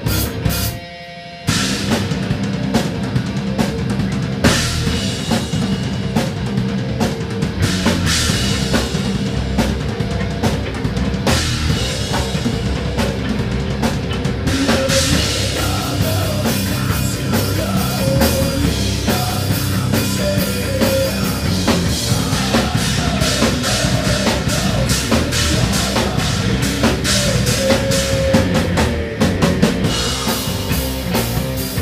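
Rock band playing loud in a rehearsal room: drum kit and guitars together in a steady driving groove. The sound drops out briefly about a second in before the full band carries on.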